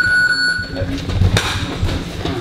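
Boxing gym round timer giving one long steady electronic beep that cuts off suddenly about a second in, signalling the start of a round. Then a single sharp smack about a second and a half in, a punch landing on a focus mitt.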